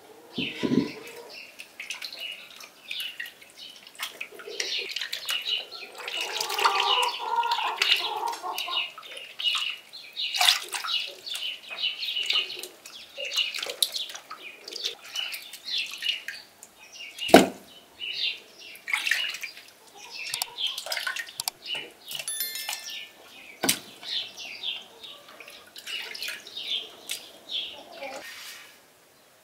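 Hands washing chunks of raw beef tail and ribs in a basin of water: irregular sloshing and splashing as the meat is rubbed and turned, with birds chirping throughout. Two sharp knocks stand out, one just past the middle and one near the end.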